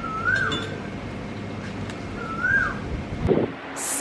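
A bird's whistled call, a short note that rises and then falls, heard twice over a steady background hush, with a few knocks near the end.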